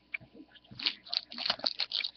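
Trading cards and a foil card pack being handled on a table: a scatter of short, soft rustles and taps.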